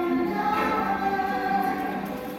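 Two women singing a slow song together into microphones, holding long notes, with a ukulele accompanying.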